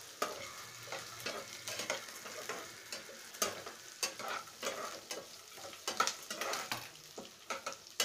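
Metal spatula stirring and scraping in a steel kadai, with irregular sharp clicks of metal on metal over a light sizzle of peanuts, onion and green chillies frying in oil.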